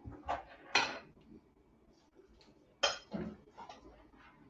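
Hard plastic and metal handling clatter as a phone is taken down from an overhead mount: a few sharp knocks and rattles, the loudest just under a second in and again near three seconds.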